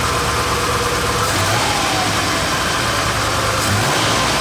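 1955 Chevrolet Bel Air's 265 cubic-inch small-block V8 with a four-barrel carburettor, idling steadily.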